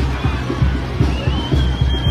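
Festive band music with a steady, fast bass-drum beat, about four beats a second, playing loudly over the carnival crowd.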